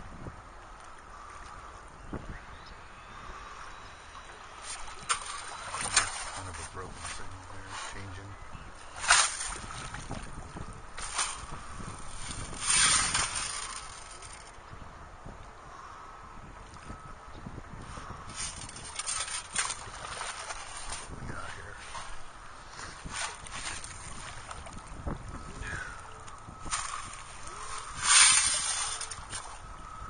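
Shallow water sloshing and splashing in short, irregular bursts as a metal detector coil is swept through it and boots wade in the wash; the loudest splash comes near the end.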